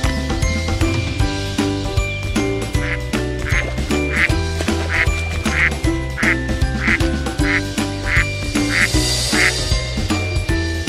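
Light, jingly background music with a run of about a dozen evenly spaced duck quacks laid over it, starting about three seconds in and stopping just before the end.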